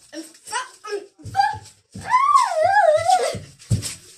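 A girl's voice imitating a horse's whinny: one long wavering call that falls in pitch, after a few short vocal sounds. Under it are the thuds of running footsteps, with a heavier thump near the end.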